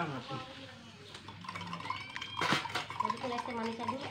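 People talking in low voices, with one sharp clink of tableware about two and a half seconds in.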